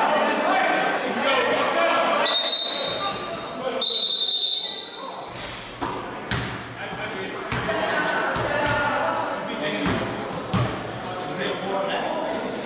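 Basketball bouncing on a gym floor, with voices of players and spectators echoing in a large hall. A high steady whistle-like tone sounds twice in the first half, and several dull bounces come in the second half.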